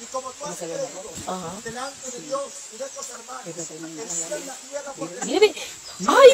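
Several people's voices talking over one another, over a steady background hiss. Near the end one voice rises sharply in pitch and gets louder.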